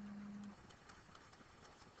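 Near silence: room tone, with a faint steady low hum that stops about half a second in.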